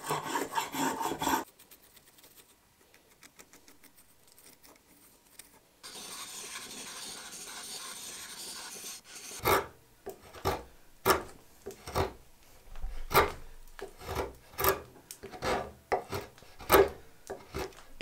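Spokeshave cutting shavings from black locust wood. A quick run of rasping strokes comes first, then a pause; from about six to nine seconds a faint steady hiss; then separate scraping strokes, about two a second, to the end.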